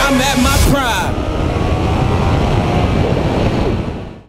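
Motorcycle ridden at speed: a dense rush of wind noise on the microphone over the engine running steadily underneath, fading out near the end.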